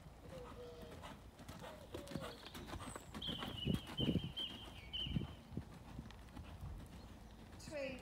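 A ridden horse's hoofbeats on a loose outdoor arena surface. The footfalls come in a steady rhythm and are loudest about four seconds in, as the horse passes close by.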